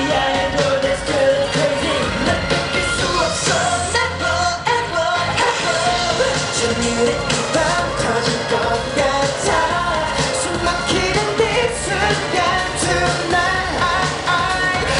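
Live K-pop performance: a male group singing over a loud pop backing track with a steady beat.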